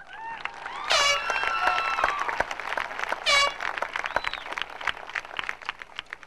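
Audience clapping and cheering for a graduate, with two loud, high-pitched whoops, one about a second in and a shorter one just after three seconds; the clapping thins out near the end.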